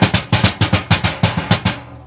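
A child drumming: a fast, even run of about a dozen sharp strikes, roughly seven a second, that stops near the end.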